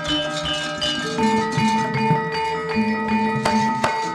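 Gamelan music: struck bronze metallophones ringing in held notes that step from pitch to pitch, with a couple of sharp knocks near the end.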